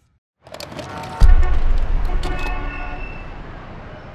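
Logo sound effect: city street noise with car horns honking and a few sharp clicks, then a deep boom about a second in that slowly fades away.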